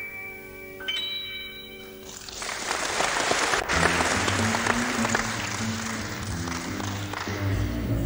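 The last high notes of a song ring out, then a concert hall audience bursts into applause that lasts about five seconds. Partway through the applause, an upright bass starts a plucked line that carries on into the next song.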